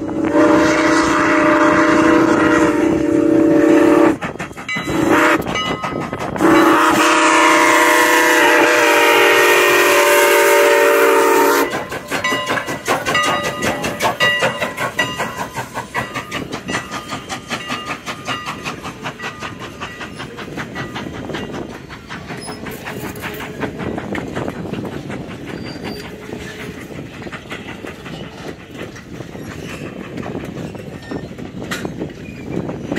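Steam locomotive whistle sounding for a road grade crossing: a long blast, a brief one, then another long blast of about five seconds. It is followed by the 2-6-0 steam engine and its wooden passenger coaches rolling over the crossing, the wheels clicking rhythmically over rail joints and fading as the train moves on.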